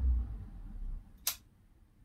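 A low rumble fades over the first second, then a single sharp click of a wall light switch being flicked off, turning off a fluorescent tube.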